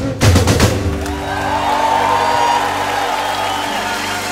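Live band ending a song: a few last drum strokes in the first second, then a held closing chord rings on with a voice sustaining over it and crowd noise beneath.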